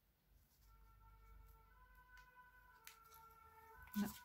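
Faint fire engine siren passing at a distance: steady siren tones come in about half a second in and slowly grow a little louder. A single light click about three seconds in.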